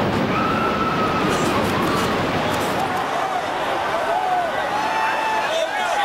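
Archive recording of people crying out and wailing over a dense, steady background noise, their drawn-out cries rising and falling in pitch.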